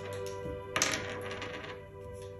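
A single game die rolled onto a wooden table, clattering and tumbling for about a second, starting a little under a second in.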